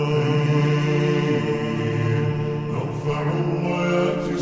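Slowed, reverb-heavy, bass-boosted Arabic nasheed: chanted vocals held in long notes over a deep, steady low hum, the notes shifting near the end.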